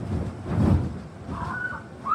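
Dull, low thumps of a child jumping and landing on an inflatable bounce house, the loudest about two-thirds of a second in.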